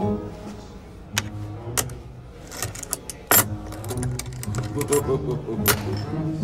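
Coins clinking as they are set one at a time onto stacks on a wooden table: a handful of sharp metallic clicks, the loudest about three seconds in and near the end, over low background music and murmur.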